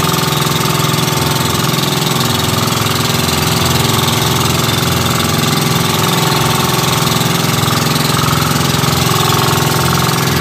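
Engine of a motorized outrigger fishing boat running steadily at speed, its loud firing note unchanging throughout.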